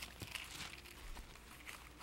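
Faint rustling and small ticks of thin Bible pages being turned, over a steady low hum.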